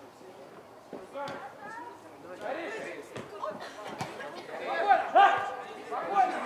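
Shouts and calls from several voices during a small-sided football game, growing louder toward the end with a few loud, drawn-out yells, over a few sharp knocks.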